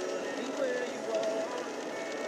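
Faint voices talking quietly over a steady background noise: a brief lull in a conversation.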